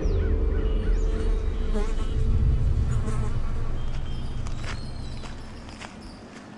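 A low buzzing hum that fades out near the end, with faint bird chirps above it.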